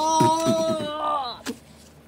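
A voice holding one long, steady wordless note in play, breaking off about a second and a half in; a single soft click follows.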